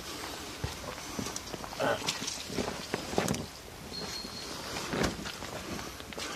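Footsteps on a dirt forest path, an uneven series of scuffing steps about two a second.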